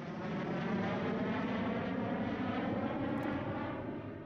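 Avro Vulcan jet bomber flying past, the noise of its four Olympus turbojets swelling in, holding steady, then fading near the end.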